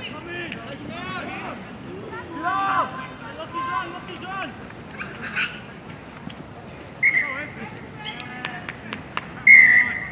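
Rugby league referee's whistle, blown short about seven seconds in and then long and loud near the end to stop play after a tackle. Players and spectators shout over the field.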